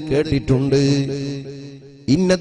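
A man's voice chanting a drawn-out melodic phrase, ending on one long held note that slowly fades away.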